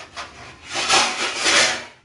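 Loud rasping, rubbing noise: two short strokes at the start, then a longer, louder one lasting about a second, ending just before the two-second mark.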